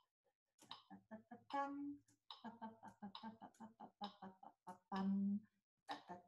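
Faint, indistinct murmured speech from a woman, in short broken syllables with a couple of slightly longer held sounds, in a small room.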